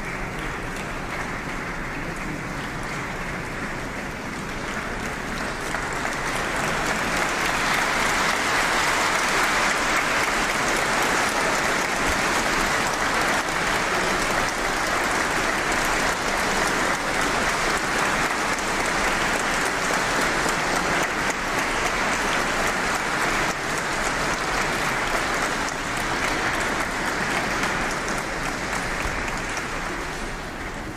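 A large seated audience applauding, the clapping swelling about six seconds in and then holding steady.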